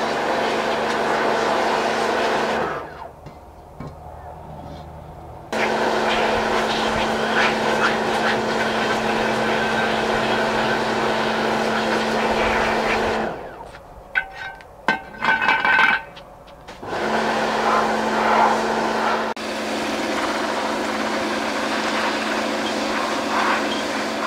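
Pressure washer running, its water jet blasting rust and grime off a cast iron wheel on concrete: a loud steady spray over a steady pump hum. The spray stops twice, for about three seconds near the start and for about four seconds around the middle, with a few small ticks in the second pause.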